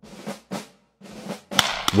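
Drum-led music: three swelling strokes, then a run of sharper hits near the end.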